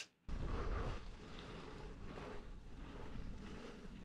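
Wind and riding noise on the microphone of a camera mounted on a moving gravel bike: a steady low rush that comes in about a third of a second in, slightly louder at first.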